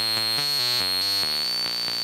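Modular synthesizer notes, about five a second in a stepping sequence, played through a Doepfer A-106-1 Xtreme Filter set to high-pass only with the resonance turned up. A steady high whistle from the filter's resonance peak rings over the notes.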